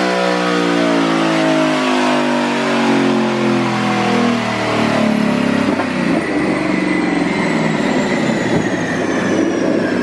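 Twin-turbocharged 5.0 Coyote V8 of a 2019 Mustang GT winding down on a chassis dyno after a full-throttle pull. The loud engine note falls steadily in pitch over several seconds, with a thin high whine falling alongside it.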